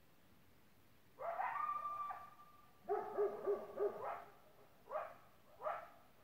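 A Great Pyrenees and a coyote barking: a rising call held on one pitch for about a second, then a run of four quick barks, then two short rising yips near the end.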